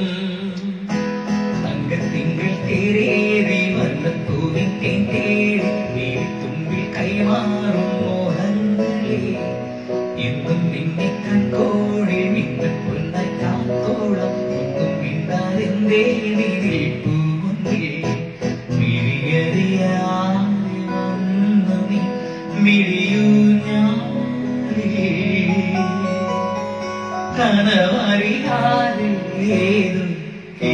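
A man singing a song into a handheld microphone, accompanied by an electronic keyboard.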